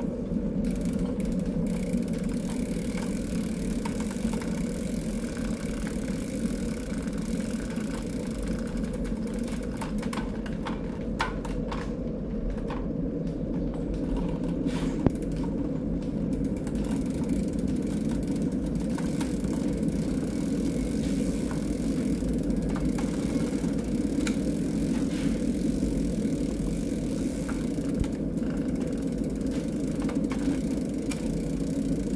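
Carbon road bike's Shimano 105 drivetrain turned by hand on the stand: the chain running over the chainrings and cassette with the rear wheel spinning, a steady whir, with a few faint clicks from about 9 to 16 seconds in.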